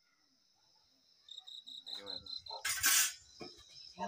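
Crickets chirping steadily at night, a high even trill. In the second half come clattering and clicks, and about three seconds in a short, loud hiss, the loudest sound.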